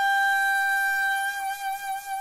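Shakuhachi, the Japanese end-blown bamboo flute, holding one long note on its own. The note is steady at first, then wavers in loudness in its second half.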